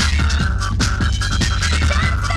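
Early-1990s hardcore breakbeat rave music from a live DJ set: fast breakbeat drums over a deep, heavy bass line, with a held synth note on top.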